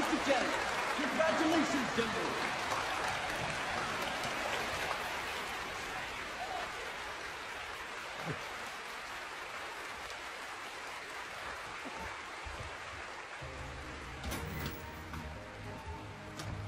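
An audience applauding, with some voices cheering at first; the applause slowly dies away. Low music comes in near the end.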